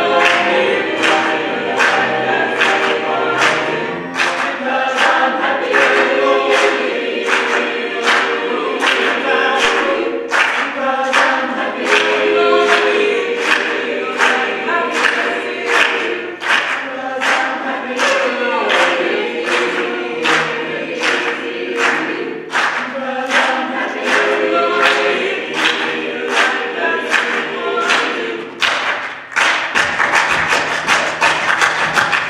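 Large mixed choir singing in harmony, with hand-clapping on the beat about twice a second.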